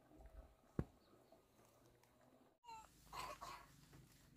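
Near silence with a single sharp click a little under a second in; from about two and a half seconds in, faint outdoor noise with a few short animal calls.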